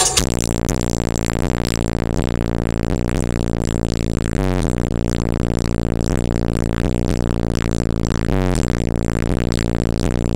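Bass-heavy electronic music played loud through a car stereo with three 18-inch DC Audio Level 5 subwoofers. Deep bass notes are held, shifting pitch about every four seconds.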